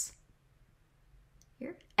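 A pause in a woman's speech: her question trails off, then near silence with a few faint clicks, and a short sound of her voice just before she starts speaking again.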